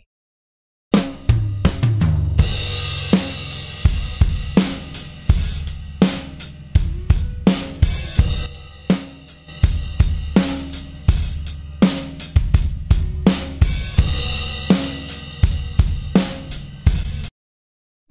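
Recorded acoustic drum kit (kick, snare, toms and cymbals) playing a steady beat, with a heavily compressed, fuzz-distorted parallel crush bus being faded in slowly under the dry drums. The drums start about a second in and stop just before the end.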